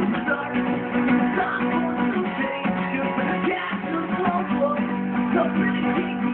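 Acoustic guitar strummed in a song, with a man singing along.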